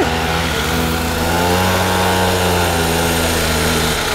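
Small mini moto (pocket-bike) engine running under throttle, its note climbing a little in pitch early on and then holding steady as the bike accelerates up a slight rise.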